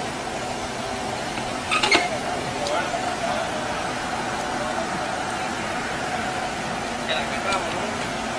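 Steady outdoor street background noise with faint, indistinct voices, and a short sharp clink a little under two seconds in.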